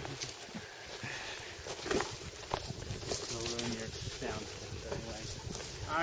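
Footsteps on farm soil, a scatter of soft irregular steps, with faint voices in the background.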